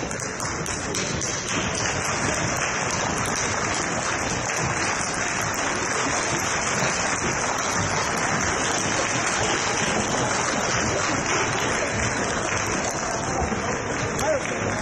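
Steady hubbub of a large crowd in a concert hall: many voices talking at once, blurred into one murmur, with scattered light clicks.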